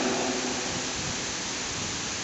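Steady, even hiss of background noise in a large, echoing church, with the tail of a man's voice dying away in the echo at the start.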